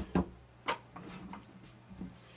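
A few sharp wooden knocks and clicks from a teak folding table being handled as its leaves are set out, the loudest right at the start and the rest within the first second and a half.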